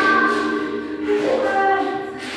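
Voices singing held notes together in harmony, with the chord shifting to new notes about a second in.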